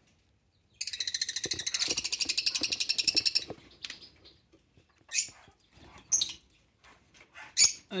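Rosy-faced lovebirds in a nest box: a burst of rapid, high-pitched chattering calls, about ten a second, lasting some two and a half seconds. Then come a few short, separate chirps.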